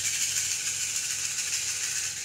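Cowrie shells shaken steadily in cupped hands, a continuous dry rattle, before they are cast for a divination reading.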